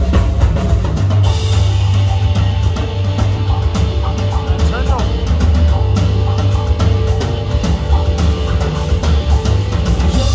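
Live blues-rock band playing loud: electric guitar, bass guitar, keyboards and drum kit, with a heavy bass line under a steady driving drum beat.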